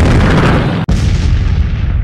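Explosion sound effect in an animated intro: a loud boom with a deep rumble, broken by a momentary cut about a second in, then dying away near the end.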